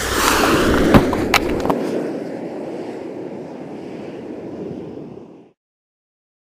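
Rustling, scraping handling noise on the microphone of a handheld camera as it swings about, with two sharp knocks about a second in. It fades and cuts off suddenly about five and a half seconds in.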